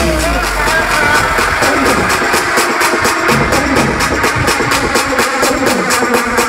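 Electronic dance music from a DJ set played loud over a large sound system, with fast, steady hi-hats; the bass thins out for a while in the middle.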